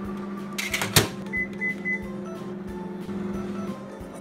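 Microwave oven running with a steady hum that stops shortly before the end. A sharp click comes about a second in, followed by three short high beeps.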